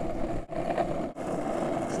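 Hard wheels rolling at speed over an asphalt path as a husky pulls the rider, a steady rolling hum that drops out briefly twice.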